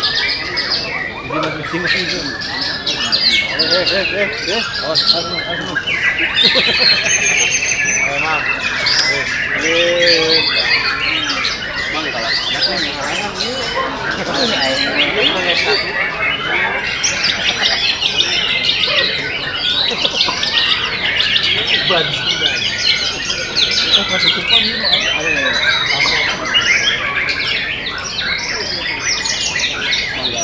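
A dense chorus of caged songbirds, white-rumped shamas among them, singing loudly and over one another without a break: many overlapping trills, whistles and harsh calls at a songbird contest.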